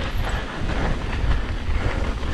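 Mountain bike rolling fast down a dirt trail: knobby tyres rumbling over packed dirt, the bike's chain and frame rattling over the bumps, with wind buffeting the camera microphone.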